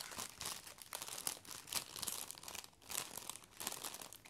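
Clear plastic wrapper of a yarn skein crinkling as it is handled and turned over in the fingers, a run of irregular crackles.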